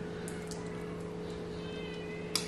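Quiet room tone with a steady low hum. Near the end comes a faint, high-pitched, slightly wavering cry.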